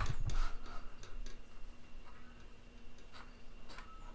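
Ink drawing pen sketching on paper: scattered light ticks and scratches from the pen tip, with a few soft low bumps in the first half second.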